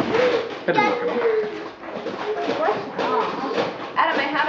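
Indistinct chatter of several voices talking over one another, children's voices among them.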